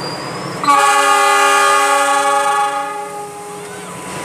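A diesel locomotive's horn, a CC 206, sounds one loud, steady multi-tone blast. It starts abruptly a little under a second in and fades out after about two seconds.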